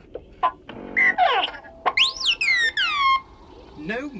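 R2-D2 beeping and whistling: a few short electronic chirps and warbles, then about two seconds in a louder swooping whistle of several tones that rises and falls away over roughly a second.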